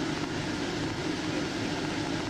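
Steady hum and hiss of road traffic and an idling patrol car, heard through a police dashcam recording.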